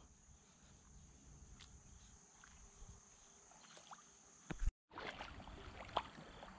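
Quiet lakeshore ambience: a steady high insect trill with a few faint ticks and small splashes, and a sharper knock a little past halfway. The sound then cuts off abruptly and gives way to a soft, even wash of lapping lake water.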